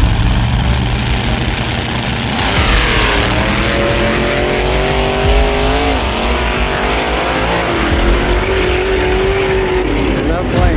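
Two street drag cars launching at full throttle and racing away. One sweeps past with a falling whoosh about two and a half seconds in. The engine note then climbs, drops at a gear change around six seconds, and carries on as the cars pull off down the road.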